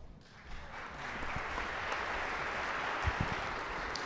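Audience applauding, building up about half a second in and then holding steady.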